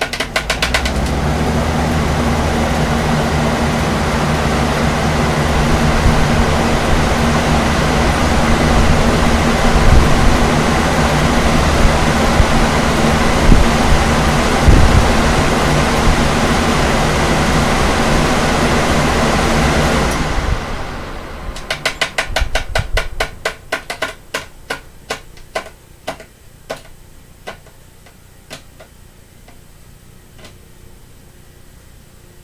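Four electric fans, a Lasko high-velocity floor fan and Lasko, Pelonis and vintage Holmes box fans, running together on high speed: a loud, steady rush of air over a low motor hum. About twenty seconds in they are switched off and the noise dies away, followed by a run of clicks that slow and spread out as the fans coast down.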